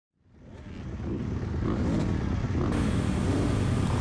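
Motocross dirt bike engine running, fading in over the first second or so and then holding steady.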